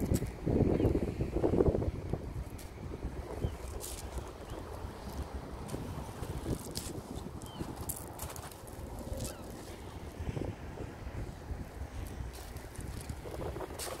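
Footsteps crunching on a shingle beach at irregular intervals, with wind buffeting the microphone.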